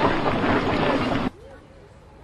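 Outdoor street noise with faint voices, a steady rushing haze like wind on the microphone or traffic, that cuts off abruptly about a second in at an edit, leaving a much quieter background.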